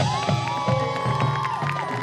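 Marching band playing, with several long held high notes that drop away near the end over a steady low beat, and spectators cheering.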